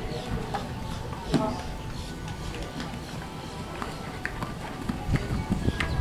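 Horse cantering on sand arena footing, its hoofbeats heard as scattered dull thumps, with a few louder landings about a second in and again near the end. Under it runs a steady low rumble, with a faint loudspeaker voice and music in the background.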